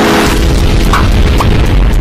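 Intro-animation sound effects: a whooshing rush at the start over a loud, sustained deep boom, with two short higher blips about a second in.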